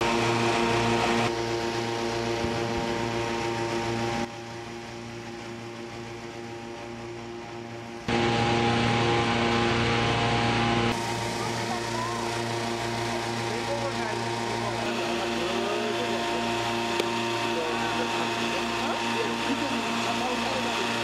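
Engine-driven balloon inflator fans running steadily, cold-inflating hot air balloon envelopes on the ground, with an even engine hum. The hum drops abruptly about four seconds in and comes back louder about eight seconds in.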